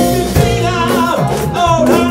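Live band playing: a lead vocalist singing over electric guitars, a drum kit and keyboard, with regular drum strokes under the melody.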